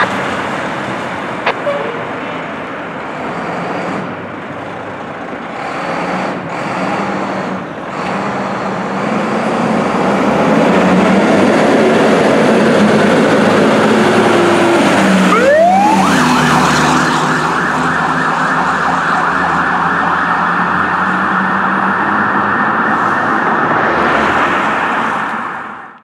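Fire engine pulling away, its engine growing louder. About two-thirds of the way through, its siren starts with a quick rising sweep and then sounds continuously with a fast warble.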